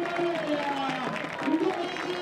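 Pitch-side match sound of a football goal celebration: scattered distant shouts from players, over a faint crowd background.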